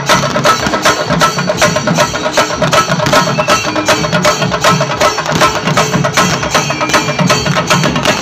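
Ensemble of chenda drums beaten with sticks, many drummers playing a fast, loud, driving rhythm together with dense, evenly repeating strokes.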